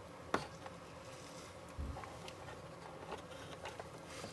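Light handling clicks and a soft thump as the interior floor panel of a large-scale Shelby Cobra model is set into its chassis over the wiring, under a faint steady hum. There is a sharp click about a third of a second in and a soft knock near two seconds in.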